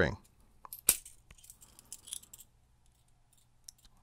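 Small metal clicks and clinks as a fishing hook, a steel split ring and split-ring pliers are picked up and handled, with one sharp click a little under a second in and a few lighter ticks after it.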